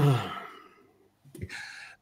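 A man's sigh, falling in pitch and trailing off over about a second.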